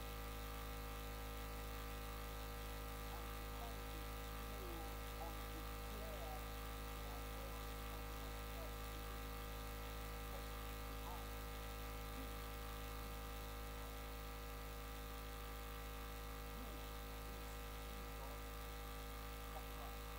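Steady electrical mains hum with a stack of constant tones, unchanging throughout, with faint indistinct voices underneath.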